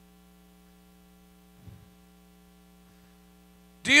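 Faint, steady electrical mains hum, with one brief soft sound a little before halfway.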